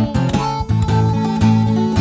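Acoustic blues guitar playing a steady, repeating bass-note pattern with treble notes in a slow blues, between two sung lines.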